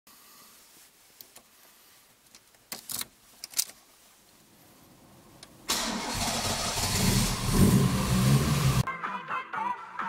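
Homemade screwdriver-handle key clicking into a Toyota MR2 Mk1 (AW11) ignition lock about three seconds in. Near the middle the engine cranks and starts, running loudly for about three seconds before cutting off suddenly.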